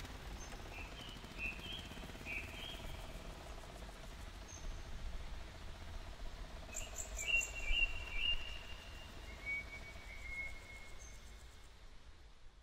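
Forest ambience: birds calling in short chirping phrases, a few near the start, a louder cluster past the middle and a falling whistle near the end, over a faint steady insect drone.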